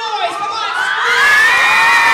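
Audience cheering and shouting, many voices together, swelling over the first second and a half and then holding loud.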